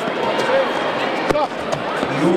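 A single sharp thud about a second and a half in, as a young kickboxer is knocked down onto the foam mat, over the steady chatter of a crowded sports hall.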